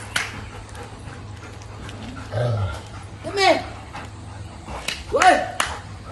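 Dogs giving short, excited barks while playing: a low one about two and a half seconds in, then sharper barks about three and a half and five seconds in.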